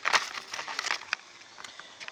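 Packaging or paper rustling and crinkling as it is handled, with a few sharp crackles in the first second, then quieter.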